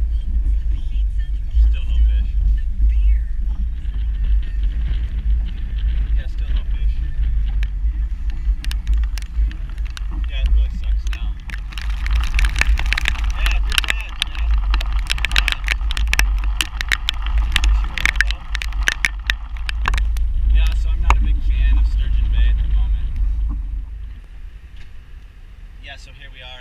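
Wind buffeting the camera's microphone in a small open boat, a heavy low rumble. About nine seconds in, rain begins hitting the camera and boat as a dense rush of sharp ticks, easing off about twenty seconds in.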